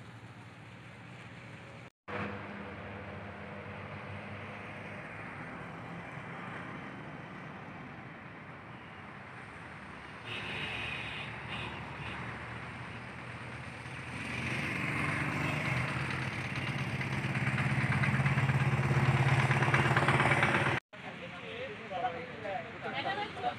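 Roadside traffic noise with a motor vehicle engine running, growing louder over the last several seconds, with indistinct voices underneath. The sound drops out abruptly and briefly about two seconds in and again near the end.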